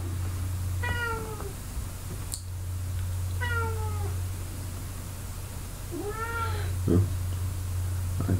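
Domestic cat meowing three times, each meow under a second long: the first two fall in pitch, the last rises and then falls. A steady low hum runs underneath.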